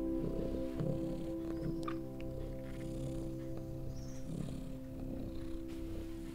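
Slow, calm music of long held chords, with a domestic cat purring over it in waves that rise and fade.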